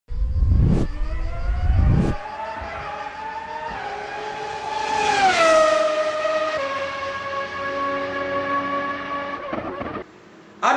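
Race car engine: two loud low bursts in the first two seconds, then the engine note climbs slowly in pitch and drops sharply around five seconds in, as a car passing by, and holds a steady lower note until it cuts off just before the end.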